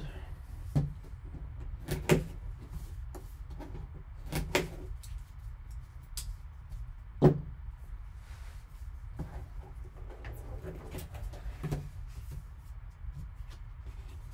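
Cardboard card box handled and set down on a table: a series of separate knocks and thumps, the loudest about seven seconds in, ending with the box lid being lifted.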